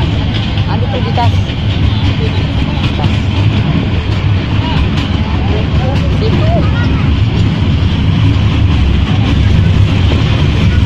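Small tourist train in motion, heard from on board: a loud, steady low rumble, with faint passenger voices in the background.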